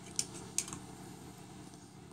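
Light handling clicks and taps as digital caliper jaws are slid shut against a pistol magazine: two sharp clicks in the first half-second, then a few faint ticks.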